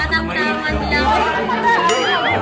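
Voices chattering over background music.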